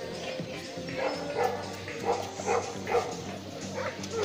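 A dog barking about five times in quick succession over steady background music.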